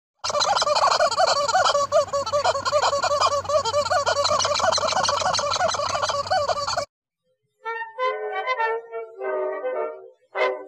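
Rubber chicken squeaky toy squawking rapidly and continuously as a horse chews it in its mouth, then cutting off sharply about seven seconds in. A short musical sting follows near the end.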